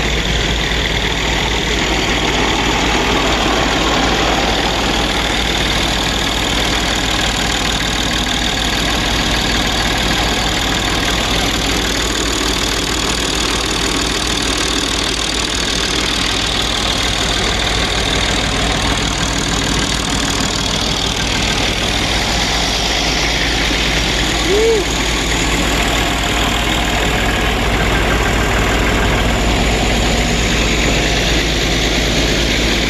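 Steady idling-engine noise under an even hiss, unchanged throughout, with one brief squeak about 25 seconds in.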